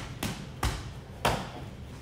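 Gloved kickboxing strikes being caught on a partner's gloves and guard: four sharp smacks within about a second and a quarter, the last the loudest.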